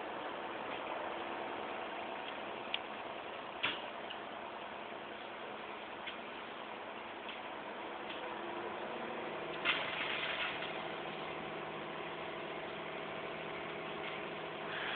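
Vehicle engines idling steadily, with a lower hum joining about eight and a half seconds in. A couple of faint clicks come in the first four seconds, and a short burst of hiss about ten seconds in.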